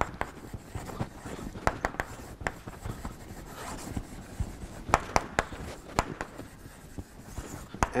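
Chalk writing on a blackboard: irregular taps and short scratches as the chalk strikes and drags across the board, the sharpest clicks about five seconds in.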